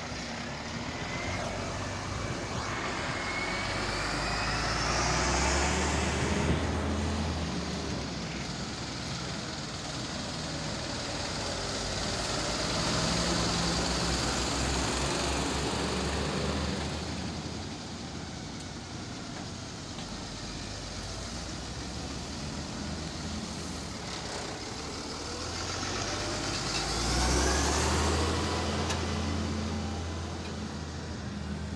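Iveco Eurocargo diesel trucks and other vehicles driving past one after another, engines running, the sound swelling louder three times as each passes close. A rising whine comes twice as vehicles pull away.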